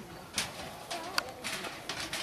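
A dove cooing low in the background. A few light knocks and rustles come from debris being handled, one about half a second in and a sharper click just past a second.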